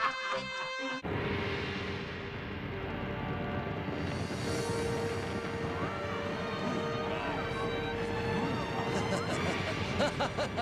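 Cartoon soundtrack: a brief pitched tone, then a sudden cut about a second in to background music over a dense rumbling noise, with faint crowd voices in the middle.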